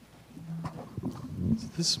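Quiet room sound with a faint, indistinct voice and a few soft knocks, then a person begins to speak near the end.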